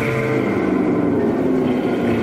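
Live band playing a loud droning noise passage: sustained tones that slowly slide downward over a dense wash of sound.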